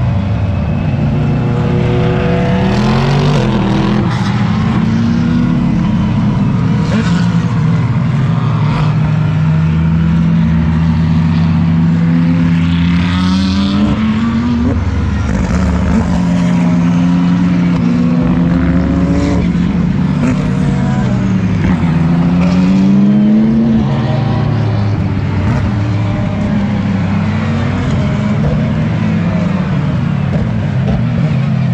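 GT3 race cars passing one after another at speed. Several engine notes overlap, each rising and then dropping back as the cars shift up through the gears. The sound peaks a little past the middle.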